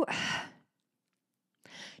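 A person's heavy exhaled sigh, about half a second long, followed by silence and a short faint intake of breath just before speaking again.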